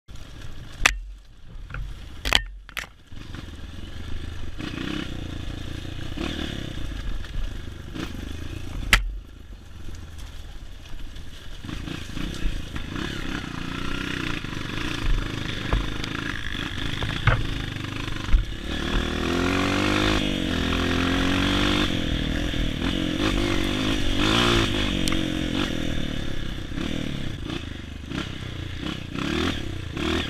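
Honda CRF230 dirt bike's single-cylinder four-stroke engine running under way on a trail, revs rising and falling with the throttle, with a few sharp knocks in the first few seconds and one around nine seconds in.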